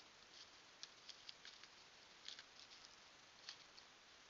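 Near silence: a steady faint hiss with soft, irregular light ticks and patters scattered through it.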